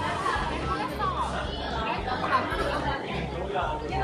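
Restaurant chatter, many voices talking over one another, over a low repeating beat of background music.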